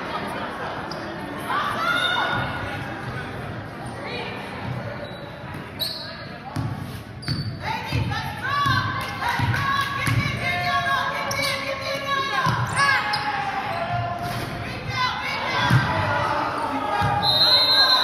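Basketball dribbled on a hardwood gym floor, a run of low thumps echoing in a large hall, mixed with players' and spectators' voices.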